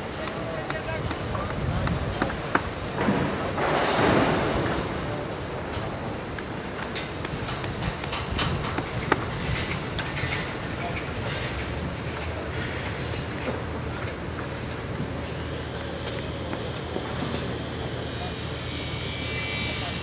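Construction-site sound: sharp metallic knocks from steel reinforcing bar being handled, over a steady bed of site noise with a louder swell about four seconds in. Voices can be heard in the background, and a steady low machine hum comes in about halfway through.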